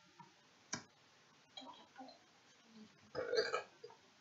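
A single sharp click about three quarters of a second in, then a short, throaty vocal sound about three seconds in.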